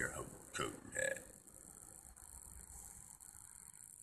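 A man's voice trailing off, with two short vocal sounds in the first second and a half, then near silence with a faint steady hiss.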